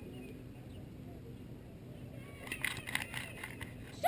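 Faint open-air field ambience with distant, indistinct voices. A cluster of short, sharp sounds comes in about two and a half seconds in.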